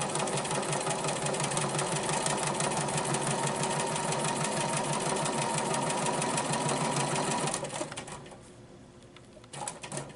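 Bernina 440 sewing machine stitching at speed during free-motion ruler quilting, the needle going in a rapid, even rhythm; it stops abruptly about three-quarters of the way through, followed by a few light clicks near the end.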